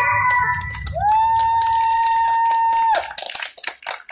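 Audience applauding in a hall at the end of a song, with a single long, steady high tone held over the clapping for about two seconds. The clapping thins to scattered claps near the end.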